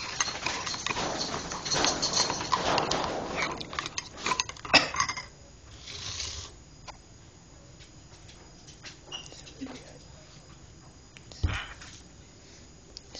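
A spoon stirring an instant cereal drink in a mug, scraping and clinking rapidly against the sides for about five seconds. It then gives a few scattered clinks, with a single knock near the end.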